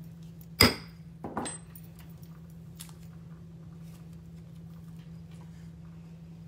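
A single hammer strike on a steel letter stamp, driving a letter into a soft aluminum washer blank on a steel bench block, with a brief high metallic ring. Lighter metal clinks follow about a second later and once more near the three-second mark.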